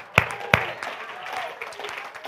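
Two sharp hand claps in the first half second, then a quieter stretch with faint voices in the background.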